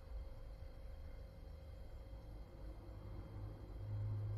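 Quiet room tone: a low steady hum with a faint steady tone above it, and no distinct sounds.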